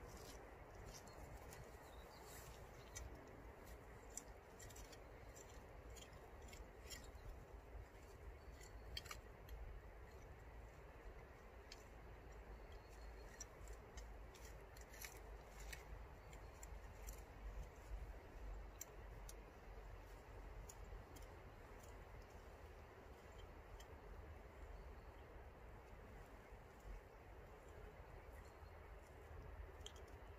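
Near silence with faint, scattered clicks and scrapes, more of them in the first half, from a small hand trowel working loose garden soil.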